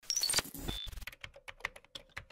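Computer keyboard typing sound effect: a run of quick, uneven key clicks, several a second, with a few short high tones in the first second.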